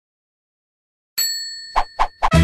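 Intro sound effect: a bright, bell-like ding that strikes about a second in and rings down, followed by two short swells near the end.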